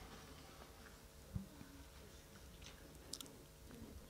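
Near silence: room tone with a faint steady hum, one soft low thump about a third of the way in and a faint click near the end.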